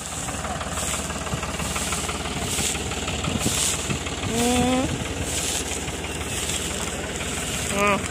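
A Massey Ferguson 20 square baler running behind a New Holland T55 tractor, baling rice straw. The baler's pickup and PTO drive work steadily along with the tractor engine, with a faint regular beat about once a second.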